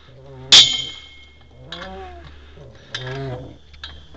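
A man's voice making short hesitant sounds between phrases, with a sharp ringing clink about half a second in over a steady low rumble.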